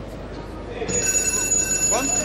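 An electronic buzzer, the kind a judo scoreboard timer gives, starts about a second in: a steady high tone that holds on unbroken.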